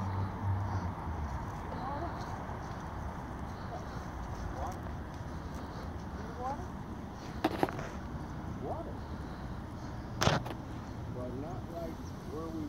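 Open-air background noise with faint, short rising and falling calls scattered through it, a low hum that fades out in the first second, and two sharp clicks, one about seven and a half seconds in and a louder one about ten seconds in.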